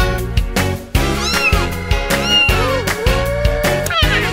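Upbeat children's instrumental music with a steady beat, with a cat meowing three times over it; the third meow is long and drawn out.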